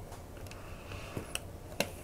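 A few short, sharp clicks of a small screwdriver and plastic model parts being handled, over a quiet room background.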